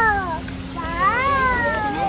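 An animal calling twice, each call a long meow-like cry that rises briefly and then falls slowly in pitch.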